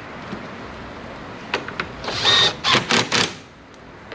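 Cordless drill driver with a 10 mm socket running in short bursts, snugging up a car door mirror's mounting bolts: one longer whining run about two seconds in, then a few quick pulses.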